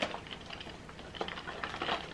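Fingers and fingernails picking and scratching at the door of a cardboard advent calendar box, trying to open it: faint, scattered little taps and scrapes.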